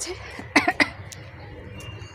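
A woman coughing twice in quick succession, two short coughs about a quarter of a second apart.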